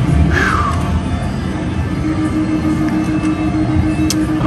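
Electronic music and tones from casino gaming machines over a steady background hum, with a short falling tone just under a second in and a held tone from about halfway.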